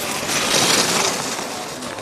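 Dog sled runners scraping over packed snow as the sled passes close by. The noise swells about half a second in and fades over the next second.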